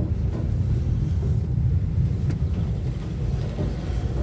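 Car driving slowly, a steady low engine and tyre rumble heard from inside the cabin.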